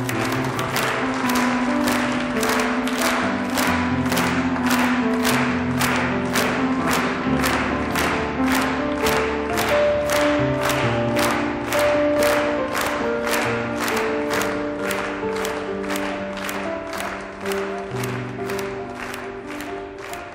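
Music with held, sustained notes over a steady beat of about two strikes a second.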